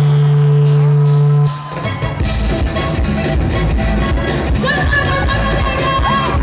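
Live pop band played loud through a concert PA and heard from within the audience. A held low note cuts off about a second and a half in, and after a brief dip the band starts a new rhythmic section with drums. A singing voice comes in near the end.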